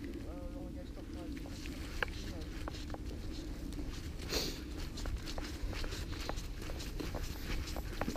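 Footsteps on a wet gravel path covered with fallen leaves, a quick run of crunching steps, with one louder crunch about halfway through.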